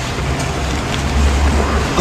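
A low rumble with steady background noise, swelling about a second in.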